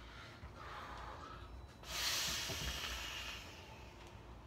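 A big direct-lung vape hit on a custom 4S LiPo box mod with a 0.14-ohm fused-Clapton dripping atomizer: a faint drawn breath, then a sudden loud breathy rush of vapour about two seconds in, fading over a second or so.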